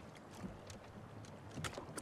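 Faint lake ambience: water lapping softly against a wooden rowboat, with a few light clicks.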